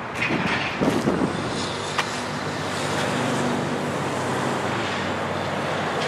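Traffic noise with a motor vehicle's engine running, a steady low hum through the middle, and a single sharp click about two seconds in.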